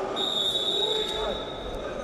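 A single high, steady signal tone held for nearly two seconds, over voices in a large hall.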